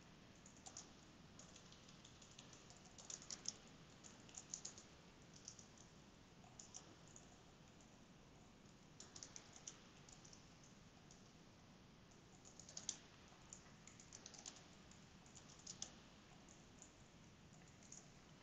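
Faint computer keyboard typing in short bursts of keystrokes, with pauses of a second or two between bursts.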